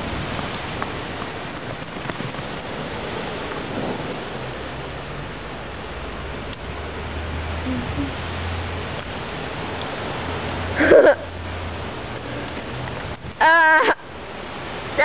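Steady rushing hiss of wind and handling noise on a moving camcorder microphone, with a faint low hum in the middle stretch. Two short voice sounds break in near the end.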